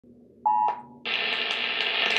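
Emergency Alert System audio through a TV speaker: a brief electronic beep about half a second in, then a steady static hiss that carries on.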